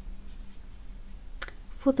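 Faint scratchy strokes of a fine paintbrush dabbing paint onto watercolour paper, then a single sharp click about a second and a half in.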